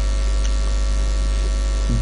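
Steady low electrical mains hum with a faint hiss from the recording chain, unchanged throughout.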